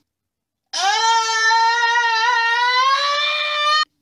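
A man's single long, high-pitched scream, held on one note for about three seconds, rising a little in pitch near the end and cutting off suddenly.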